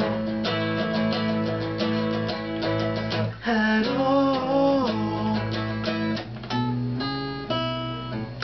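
Two acoustic guitars strummed and picked together, playing an instrumental passage of a song.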